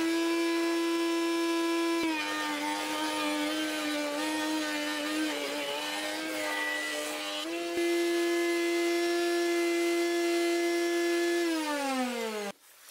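Table-mounted router with a zigzag finger-joint bit running at a steady whine. About two seconds in the pitch sags and a rough cutting noise joins it for about five seconds as a wooden lamella is fed past the bit, milling the mating zigzag profile. It then returns to free speed, and near the end its pitch falls as it winds down.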